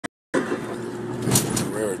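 Steady car cabin noise inside a Porsche with a Tiptronic automatic: a low engine and interior rumble that starts suddenly after a brief silence, with a man's voice coming in near the end.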